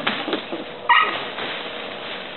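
A puppy gives one short, high-pitched yip about a second in, after a moment of scuffling and rustling at the fabric play tunnel.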